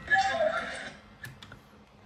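A short burst of a person's voice in the first second, then a few faint sharp clicks and a near-quiet pause.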